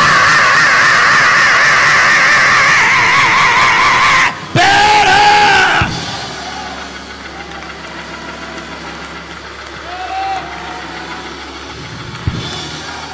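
A preacher's long, sung shout into a microphone, held on one wavering pitch for about five seconds, in the chanted close of a Black Baptist sermon (whooping). A brief break is followed by a second, shorter held cry. The sound then drops to a much quieter background for the rest.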